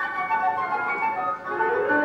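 Two flutes and piano playing a fast classical passage in the closing bars of a movement, with a quick rising run starting about one and a half seconds in.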